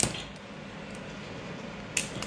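Two sharp clicks about two seconds apart, over faint steady room noise: mole grips (locking pliers) being clamped and worked on an EC5 connector.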